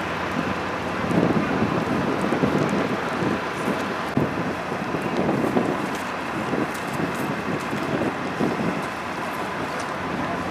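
Wind buffeting the microphone in uneven gusts over a steady open-air rumble.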